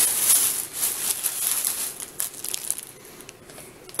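Crinkly grocery bags and packaging rustling and crackling as purchases are handled, loudest in the first second and dying away after about two and a half seconds.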